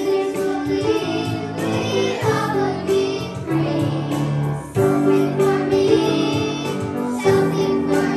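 Group of children singing together with music.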